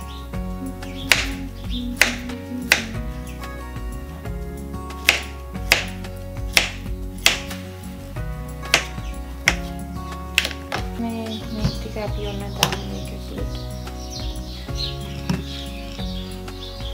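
Background music playing throughout, with a dozen or so sharp, irregularly spaced knocks of a kitchen knife cutting through a banana onto a wooden cutting board.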